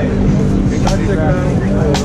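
Nearby crowd chatter over a pipe band's bagpipes, whose steady drone runs underneath. Two sharp knocks come about a second apart.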